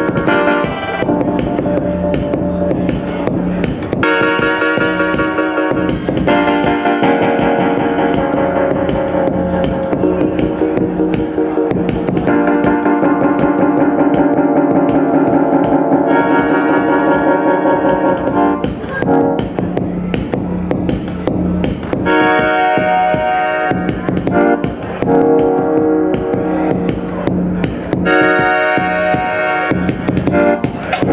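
Live instrumental electronic music: sustained synthesizer and keyboard chords that change every few seconds, over a steady ticking pulse.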